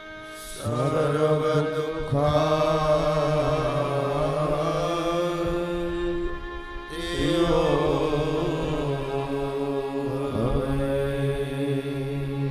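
A man chanting devotional verses in a slow, drawn-out melodic recitation over held accompanying notes, in two long phrases: one starting about half a second in, the next about seven seconds in.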